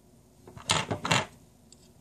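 Small metal revolver parts clinking and clattering against each other as they are handled, a short cluster of clinks with two louder ones a little under a second in, then a couple of faint ticks.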